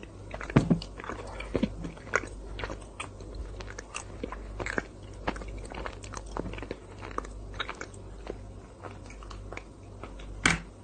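Close-miked mouth sounds of someone eating chocolate ice cream: irregular wet lip smacks and chewing clicks, the loudest about half a second in.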